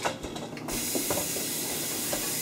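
Kitchen faucet turned on about two-thirds of a second in, water then running steadily into the sink with an even hiss.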